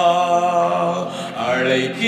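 A man singing a Tamil worship song solo, holding a long note that fades about a second in before the next phrase begins.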